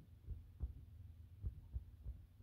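Fingertips and long fingernails tapping softly on gray upholstery fabric: four faint, low, irregularly spaced thuds over a steady low hum.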